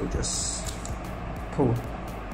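Plastic model-kit parts scraping against each other as a styrene armor shell is slid off its inner frame, a brief hiss in the first half-second.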